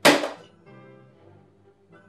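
A single loud thunk at the very start that dies away within about half a second, followed by faint background music.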